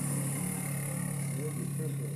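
ATV engine running steadily as it pulls a roller-crimper through a cover crop, heard as a low, even drone through a room's playback speakers, with faint voices over it.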